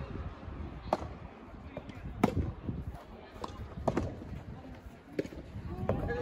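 Soft tennis rally: a rubber soft-tennis ball is struck by rackets and bounces on the court, giving a series of sharp pocks roughly a second apart. The loudest comes about two seconds in.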